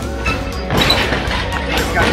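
Background music, with a noisy clatter starting about two-thirds of a second in as a tubular steel UTV roll cage is lifted out of a pickup bed.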